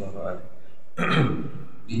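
A man briefly clears his throat into a handheld microphone about a second in, in a short pause in his talk.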